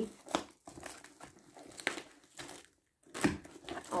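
Parcel packaging crinkling and tearing as it is wrestled open by hand, in short crackles with a brief pause about three seconds in, then a louder rip near the end as it finally gives.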